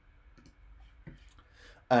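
Two faint computer mouse clicks, less than a second apart, over low room noise.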